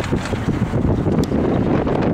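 Wind buffeting the microphone over the steady road rumble of a moving car.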